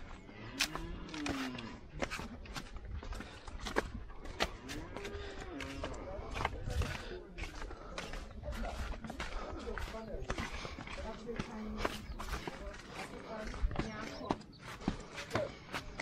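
Cattle lowing several times in long rising-and-falling calls, over a steady run of sharp clicks and scuffs of footsteps on a dirt path.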